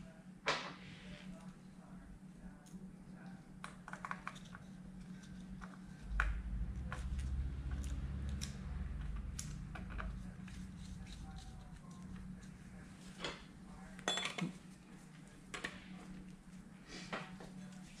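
Scattered light metallic clicks and clinks of hand tools and parts being handled on a Ducati 1198 engine during timing-belt fitting. A low rumble runs from about six to ten seconds in, over a steady low hum.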